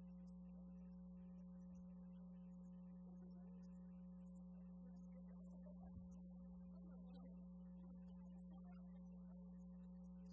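Near silence with a steady low electrical hum, one even tone throughout, and a faint bump about six seconds in.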